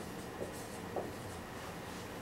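Marker writing on a whiteboard: a few short strokes with brief squeaks in the first second or so.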